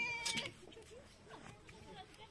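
A goat bleating once with a wavering, quivering pitch, ending about half a second in; faint background sound follows.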